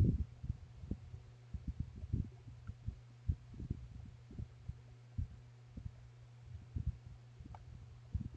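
A steady low hum under irregular soft, low thumps, several a second at times, the loudest right at the start.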